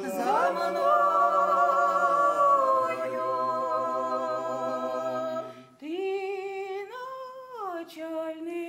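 Ukrainian polyphonic folk song sung a cappella by a small mixed ensemble of men and women, their voices holding a chord after a rising swoop into it. About six seconds in the lower voices drop out and a single woman's voice carries on alone, stepping up and back down.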